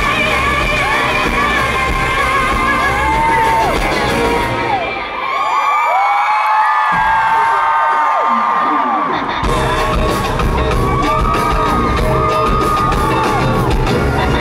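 Live pop-rock band playing loudly in a large hall, with the crowd screaming over it. About five seconds in, the drums and bass drop out, leaving a thinner stretch of screams and sustained tones, and the full band with drums comes back in about four seconds later.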